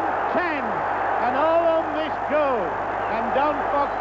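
Stadium crowd cheering a try at a rugby league match, a steady roar, with an excited male commentator's voice rising and falling over it.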